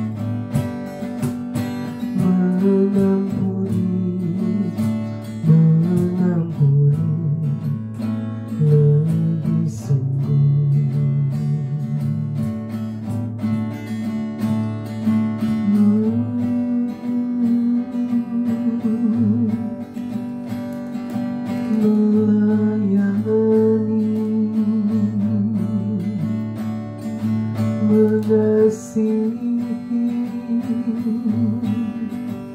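A woman singing an Indonesian worship song into a microphone while strumming an acoustic guitar.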